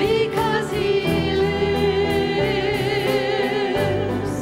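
Live worship band playing a song: several women singing together with vibrato into microphones, over a band accompaniment with drums keeping a steady beat.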